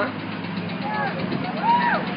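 Steady rumble of passing road traffic, with brief voice sounds at the start and twice more about a second in and near the end.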